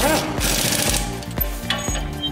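Impact wrench running in a quick rattling burst for about the first second, driving in a bolt at the foot of a car's front strut, over background music.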